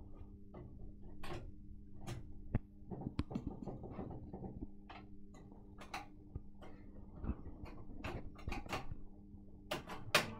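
Reel-to-reel tape recorder's motor humming steadily with the lid open, while its spindle and drive parts are turned and moved by hand, giving many irregular clicks and knocks. The drive is not taking up: its rubber drive band is perished and slack.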